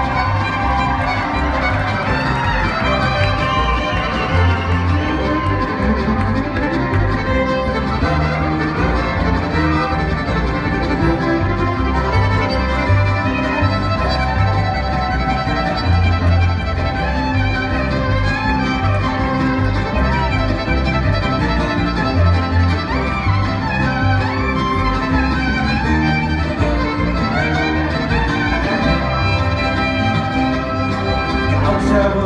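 Live bluegrass string band playing an instrumental break, the fiddle carrying the melody over a steady pulse of upright bass, with banjo, mandolin and acoustic guitars.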